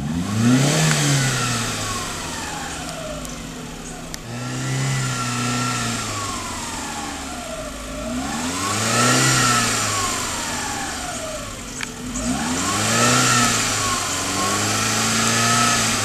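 The 2009 Chevrolet Spark's 1.0-litre four-cylinder S-TEC engine is revved several times with the car standing still. Each blip of the throttle raises the engine note sharply, then lets it fall slowly back toward idle.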